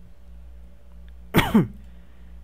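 A man's short cough, in two quick pushes with a falling pitch, about one and a half seconds in, over a steady low hum.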